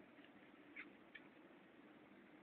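Near silence, with two faint short tern calls, high-pitched, about a second in.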